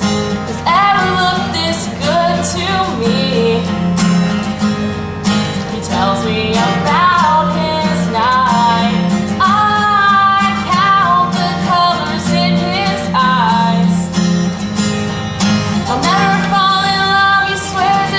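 A woman singing a country-style song while strumming chords on an acoustic guitar.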